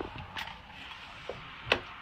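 Low background noise with a few short, sharp taps, the loudest about three-quarters of the way through.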